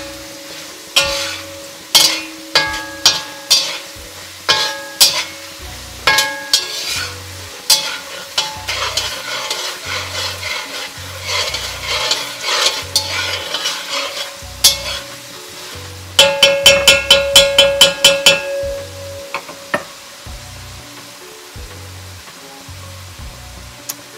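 A metal slotted spatula scraping and knocking against a kadai as diced potatoes fry with spices in hot oil, the pan ringing briefly at each strike. A fast run of rapid knocks about two-thirds of the way through is the loudest part, then only the quieter frying sizzle is left near the end.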